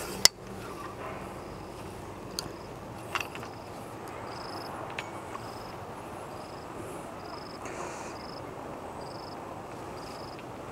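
An insect chirping in short, high pulses, about three every two seconds, over a steady outdoor background hiss, with one sharp click just after the start.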